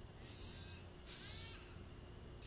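Film soundtrack playing faintly: two short bursts of hiss, each about half a second long, over a low steady hum.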